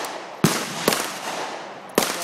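Three gunshots from other shooters at an outdoor range. Two come close together about half a second in and a third near the end. Each is a sharp report with a short echoing tail.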